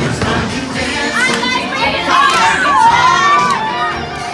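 A group of children shouting and singing out over party dance music, their high voices rising and falling loudest through the second half.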